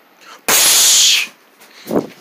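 An explosion sound effect: one short hissing burst, under a second long, starting about half a second in and stopping abruptly, standing for the popcorn exploding.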